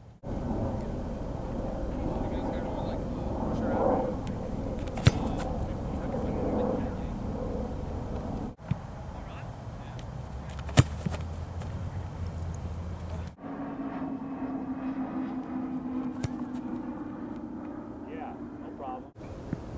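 American football place kicks: a kicker's foot striking the ball off a kicking tee, heard as sharp thumps, two loud ones about five and a half seconds apart and a fainter one near the end, over open-air background with faint voices.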